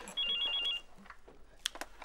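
Mobile phone ringing: a fast electronic trill flicking between two high notes, which stops less than a second in. A couple of faint clicks follow.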